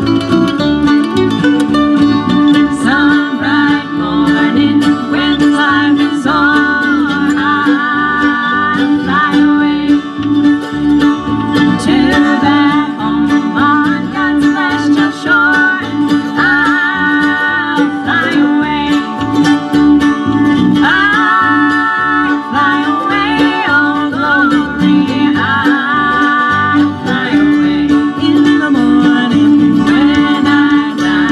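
Live bluegrass band playing a tune on fiddle, mandolin and acoustic and electric guitars, with voices singing.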